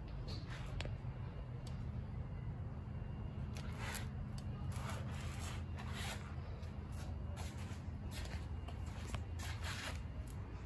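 Soft rubbing and brushing noises, several short ones clustered around the middle and again near the end, over a steady low hum; the sort of handling noise a handheld phone makes as it is moved around a wheel while filming.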